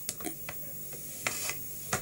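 A handful of light, irregular taps and knocks from wooden underarm crutches as a woman with a leg cast gets up on them.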